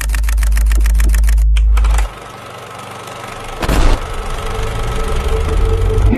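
Film projector sound effect: a fast, even mechanical clatter over a deep hum for about two seconds, then a steady hiss with a single thump in the middle, building toward the end.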